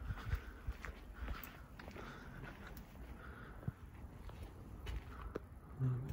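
Faint, irregular footsteps and the handling noise of a phone carried by hand while walking, over a low background rumble.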